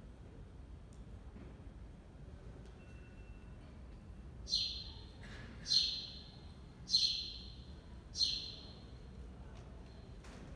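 Four loud, high chirps a little over a second apart, each sweeping down in pitch, over faint room hum.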